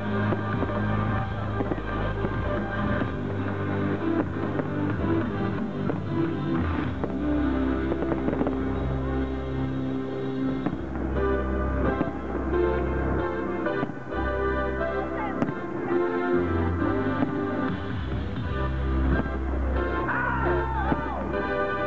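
Loud music played for a fireworks display, with firework bursts going off through it.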